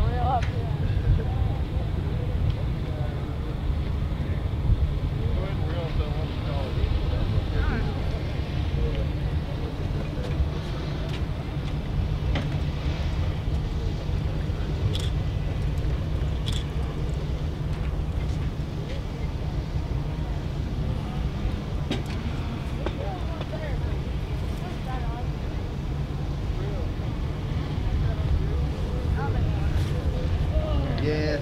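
Faint, indistinct voices of people talking, over a steady low rumble of wind on the microphone.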